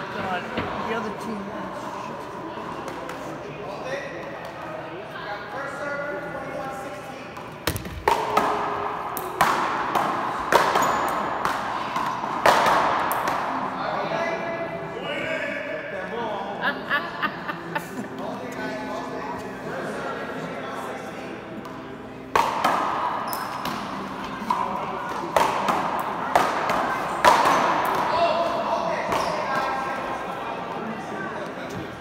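Paddleball rallies: the rubber ball cracks sharply off solid paddles and the front wall, with echo from a large indoor court hall. The hits come in two runs of a few seconds each, the first starting about a quarter of the way in and the second past the two-thirds mark.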